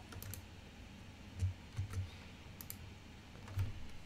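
A few scattered, quiet clicks from a computer keyboard and mouse, irregularly spaced.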